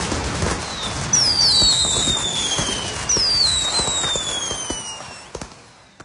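Fireworks: two whistling rockets, each a falling whistle, about a second and three seconds in, over steady crackling, fading away at the end.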